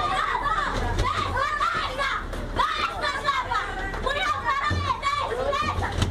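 Several people shouting and yelling over one another, high-pitched and agitated, in a brawl inside a moving city bus, with the bus's low steady rumble underneath.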